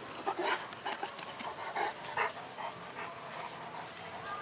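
Bullmastiff panting in a quick run of short, loud breaths over the first two and a half seconds, then easing off.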